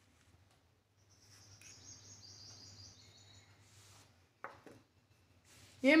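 Faint high chirping, like a bird calling in the background, running for about three seconds in a series of short stepped notes. A single light click follows about four and a half seconds in.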